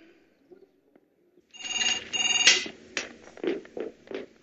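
A telephone ringing: an electronic double ring of two quick pulses about one and a half seconds in, followed by softer knocks and rustles.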